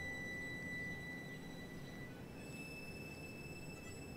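Quiet film-score music: a held low note fades away while thin high tones hang on, one high tone giving way to another a little past halfway.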